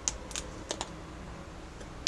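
Four short, sharp taps and clicks within the first second, as things are handled on a kitchen counter, over a steady low background hum.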